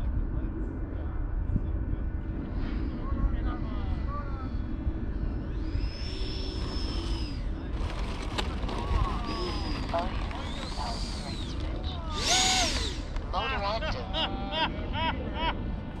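Wind rumbling on the microphone, with a brief high whine from the electric ducted-fan RC jet about six seconds in as it lands. People talking and laughing come in over the second half.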